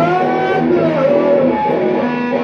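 Electric guitar on a Kramer playing a blues lead line, its notes bending up and down in pitch over steady lower notes.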